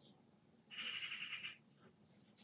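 Paintbrush dragging a stroke of gouache across textured pastel paper, a short scratchy swish that starts a little under a second in and lasts just under a second.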